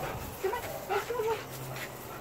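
Goldendoodle whining excitedly: a few short, wavering high-pitched whimpers in quick succession.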